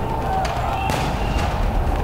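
Street-protest field audio: a loud, steady outdoor din with a couple of sharp cracks, one about half a second in and one near the end.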